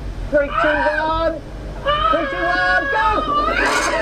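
Men's voices talking and exclaiming inside a car over a low, steady engine hum, with a rising exclamation near the end.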